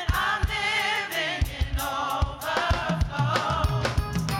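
Gospel music: a choir singing with vibrato over a band with a regular drum beat.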